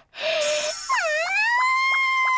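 A young woman's voice letting out a long, high "mmm~" of delight at the taste of a strong drink. A short low hum first, then the pitch dips, rises and is held high until it stops just before the end, with a few faint ticks behind it.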